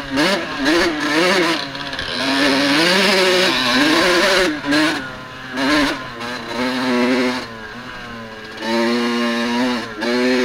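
Dirt bike engine under way, its note rising and falling again and again as the throttle is worked. It drops briefly to a quieter, lower note a few times, longest about seven and a half seconds in, before picking up again.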